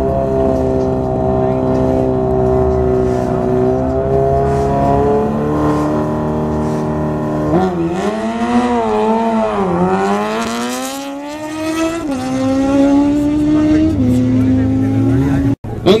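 Kawasaki Ninja ZX-14R's inline-four engine held at steady high revs, then revved up and down a few times and swept up in a long rise before dropping back to a steadier hold. The sound cuts off suddenly just before the end.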